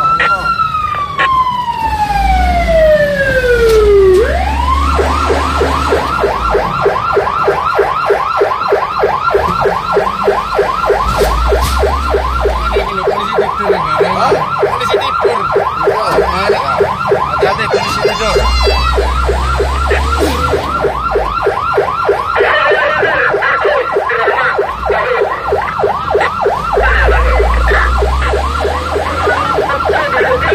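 Electronic emergency siren on a fire-response vehicle. It sounds one slow wail that falls in pitch over the first four seconds, then switches to a rapid yelp that repeats steadily for the rest of the time, over vehicle engine rumble.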